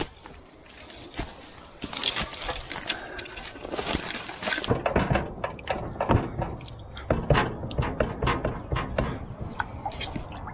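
Footsteps crunching through dry grass and twigs, with irregular crackles and snaps. The crackling is densest about two to four and a half seconds in.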